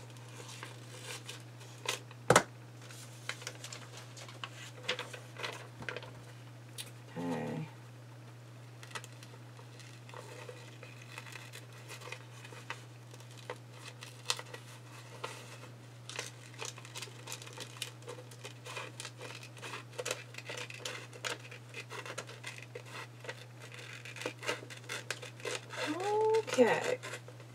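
Scissors snipping through magazine paper, with irregular clicks and the paper rustling and crinkling as it is handled. There is a sharp click about two seconds in, and a steady low hum underneath.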